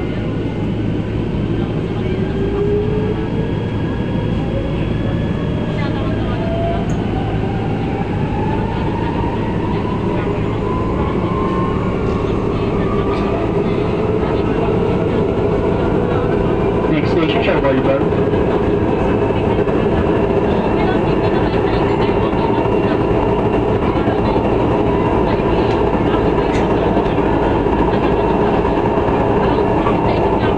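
MRT Line 3 light-rail train heard from inside the carriage as it pulls out of a station. The motor whine rises steadily in pitch for the first dozen or so seconds as the train accelerates, then holds a steady pitch as it runs along the elevated track, over a continuous rumble of wheels on rail.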